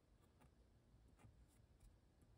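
Very faint scratching of a pen on paper, writing cursive script in a few short strokes.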